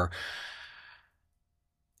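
A man's audible breath, a sigh, close on the microphone, fading out over about a second, followed by dead silence.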